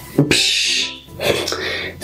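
A man's breathy laugh in two bursts, over light, steady background music.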